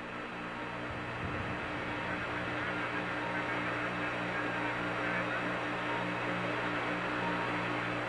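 Steady hiss and hum of the Apollo 11 air-to-ground radio link with nobody talking. A low tone pulses about twice a second under the hiss, which grows slightly louder.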